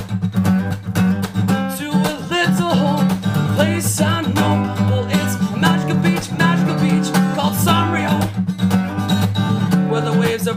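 Acoustic guitar strummed in a steady rhythm as part of a song.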